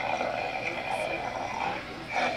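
Animatronic Halloween butcher prop playing its sound effect through its speaker while it moves: a steady rasping sound with a high ringing tone, easing off near the end.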